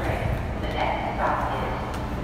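Interior running noise of an R160 New York City subway car: a steady low rumble of wheels on the track, with clacks and rattles from the car body.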